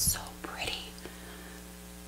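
A woman's breathy exhale and faint whispered mouth sounds in the first second, then quiet room tone with a low steady hum.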